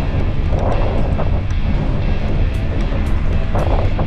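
Wind buffeting an action-camera microphone in a steady low rumble, with background music underneath.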